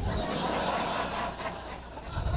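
Audience chuckling and laughing softly at a joke, dying away.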